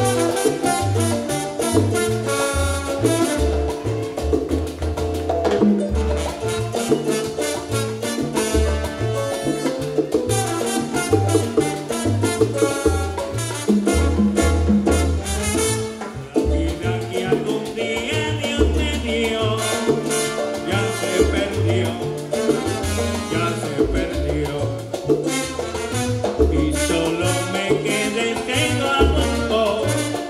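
Live salsa orchestra playing: upright bass, congas, timbales, piano and trombones in a full band groove.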